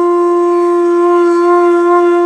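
A conch shell (shankh) blown in one long, steady, loud note.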